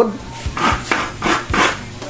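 Coconut half being scraped against the serrated blade of a stool-type coconut grater (kudkuran), shredding the meat in a quick series of rasping strokes, about three or four a second.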